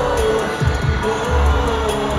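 K-pop song performed live through the arena sound system, with deep bass notes that drop in pitch and a long held tone over them.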